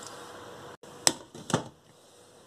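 Glass pot lid set onto a stainless steel stew pot: two sharp clinks about half a second apart, over faint room noise.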